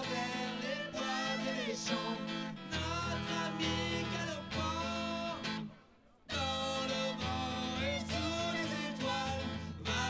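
A rock band playing live, with electric guitar and a man singing; a low bass line comes in about three seconds in. The music drops out briefly just before six seconds and picks up again.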